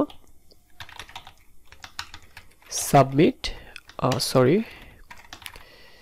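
Typing on a computer keyboard: irregular keystrokes clicking throughout. Two short bursts of a man's voice about three and four seconds in are louder than the typing.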